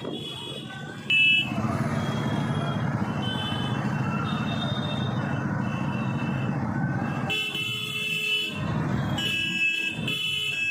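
A procession of motorcycles riding past with engines running, the sound jumping louder about a second in. Horns sound on and off throughout and most strongly near the end.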